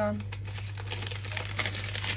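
Baking paper crinkling as ready-rolled pizza dough is handled on a baking tray: a run of small, irregular crackles over a steady low hum.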